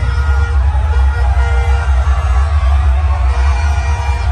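Loud concert music through a big PA system, with a heavy, steady bass line.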